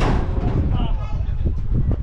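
Wind rumbling on the microphone, starting with a sudden burst that fades over about half a second, with faint voices underneath.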